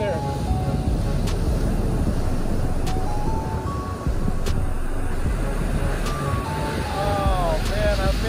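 Background music with a melody of held notes, laid over the steady rush of surf breaking on the beach.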